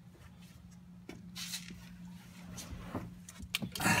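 Faint clicks and rustles of handling at an open car door, over a steady low hum, with a few more clicks near the end.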